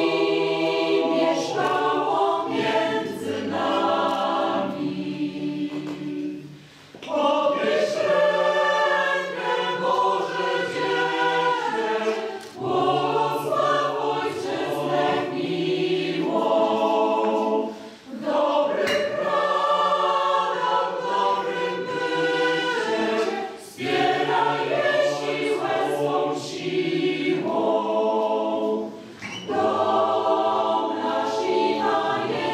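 Mixed choir of women's and men's voices singing in parts, in long held phrases with brief pauses between them about 7, 18 and 29 seconds in.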